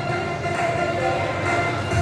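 Loud background music over the sound system, with sustained chords that change every half second or so.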